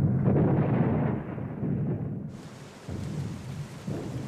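A loud, low rumble of battle noise on the soundtrack. About two seconds in it drops abruptly to a quieter, hissing layer.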